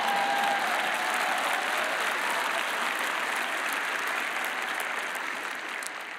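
A large arena audience applauding, the clapping slowly fading toward the end.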